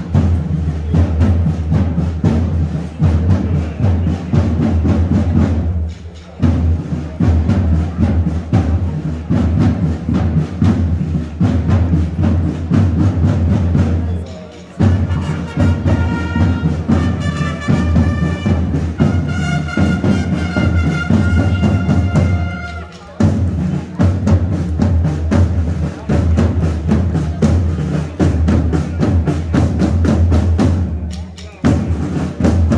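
Procession drums playing fast, continuous rolls over a deep drum beat. About halfway through, a wind instrument plays a high melody of held notes for several seconds, then the drums carry on alone.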